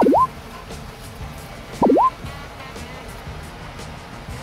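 Two loud, cartoonish rising "bloop" sound effects, each a quick upward sweep in pitch, about two seconds apart, over quiet background music.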